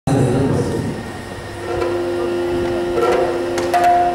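Steady drone of held notes from a Yakshagana ensemble's drone instrument, stepping to new pitches a couple of times, with a few light strikes near the end.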